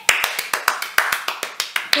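Hands clapping quickly, a run of about eight sharp claps a second.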